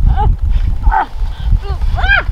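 Wind rumbling on the microphone outdoors, with four short high-pitched vocal sounds, each rising and falling in pitch, about half a second apart.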